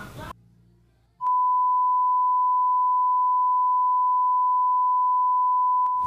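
Television colour-bars test tone: one steady, high-pitched beep on a single pitch. It starts just over a second in and holds for about five seconds before cutting off.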